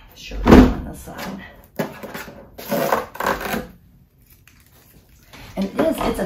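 A single heavy thump as the boxy air fryer is set down and shifted on the table, followed by a few short bursts of scraping and rustling from handling the unit and its packaging.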